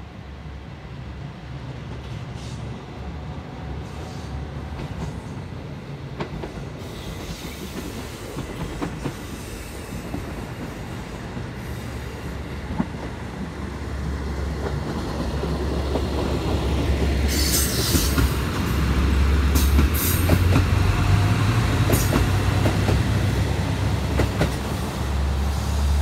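A red passenger train running along the station tracks below. Its rumble builds from about halfway through and is loudest in the last third, with sharp clacks of the wheels over rail joints and points.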